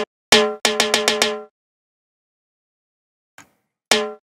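Pitched, tonal percussion sample playing as short struck hits: one about a third of a second in, then a quick run of about five, then a pause and one more hit near the end.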